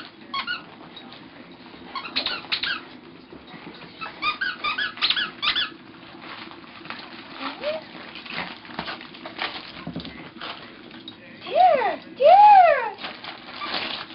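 A squeaky dog toy being squeezed: clusters of short squeaks, then two long, loud squeaks near the end, each rising and then falling in pitch.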